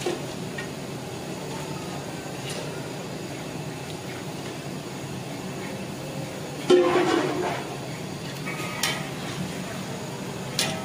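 Aluminium cooking pot and metal ladle knocking together: one loud metallic clang with brief ringing about seven seconds in, then a couple of lighter clinks near the end, as raw meat is handled in the pot.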